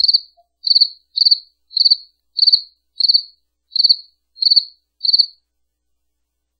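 A cricket chirping: nine short, high, pulsed chirps at about one and a half a second, stopping about five seconds in.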